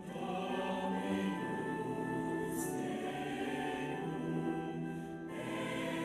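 A choir singing in harmony, with long held notes that change every second or few.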